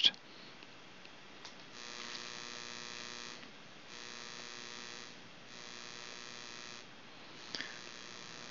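A faint electrical buzz with a steady pitch, coming on three times for about a second and a half each, with a couple of faint clicks.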